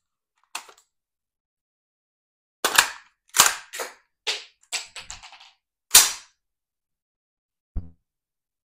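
Smith & Wesson M&P15 Sport II AR-15 rifle being handled: sharp metallic clicks and clacks of its action and magazine. One light click comes early, then a quick series of about seven clacks, the loudest near the end of that series, and one last click just before the end.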